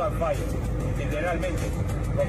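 Steady low rumble of road and engine noise inside a car cabin, under a man talking.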